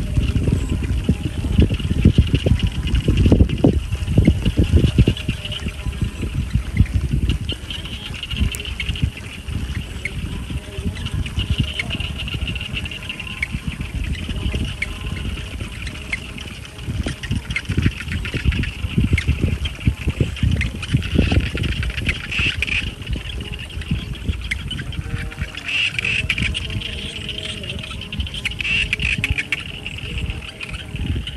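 Wind buffeting the microphone in gusts, a rumbling noise that swells and fades and is strongest in the first few seconds, over a steady high-pitched buzz.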